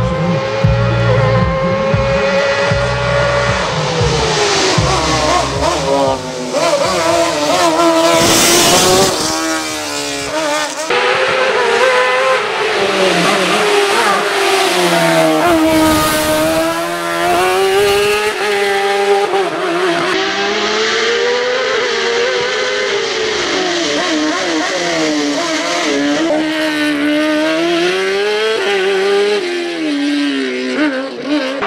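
Osella PA21 JRB sports prototype race car's engine revving hard, its pitch climbing and dropping sharply again and again through gear changes and corners. It is loudest as the car passes close, about halfway through.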